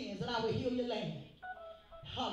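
A woman's voice through a microphone in a small room, in pitched phrases with a few briefly held notes, and a short pause near the end.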